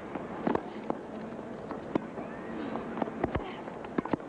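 Tennis rally: irregular sharp pops of racquets striking the ball and the ball bouncing on the court, a second or so apart, then several in quick succession near the end as at a net exchange, over a low murmur of the stadium crowd.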